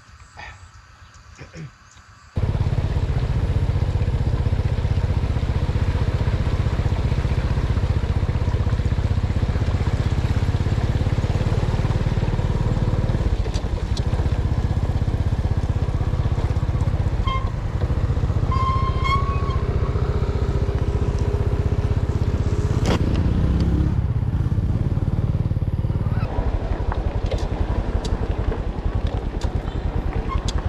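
A scooter being ridden on a dirt road: a steady, loud rumble of wind buffeting the camera microphone over the engine, starting suddenly a couple of seconds in after near quiet. Two short high tones come about two-thirds of the way through, and the rumble eases a little near the end.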